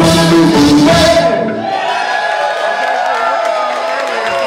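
A live band's song ending about a second and a half in, the full band stopping together, followed by the audience cheering and whooping.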